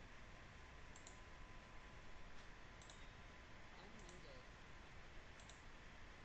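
Near silence: room tone with a few faint, scattered computer mouse clicks.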